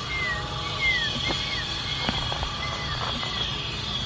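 Birds calling: several short whistled notes that arch up and then down, spaced through the few seconds, over a steady high-pitched drone and a couple of faint clicks.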